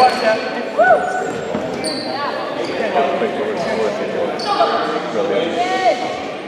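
Basketball-game sounds in a large gym: short sneaker squeaks on the hardwood court over the murmur of spectators' voices, with a couple of sharp thuds near the start.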